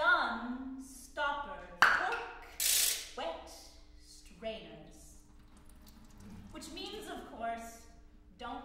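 A woman's voice speaking in short phrases, broken by percussion sound effects: a sharp crack about two seconds in and a short noisy burst just under a second later.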